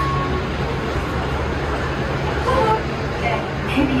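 Zurich airport Skymetro shuttle train running, heard from inside the car: a steady rumble with a low hum. Faint voices come in near the end.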